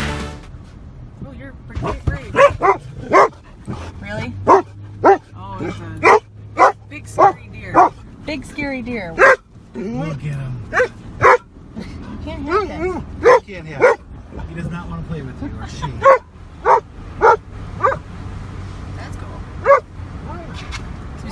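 Dog barking again and again in quick runs inside a moving car's cabin, worked up by a deer seen at the roadside, over the car's steady low hum.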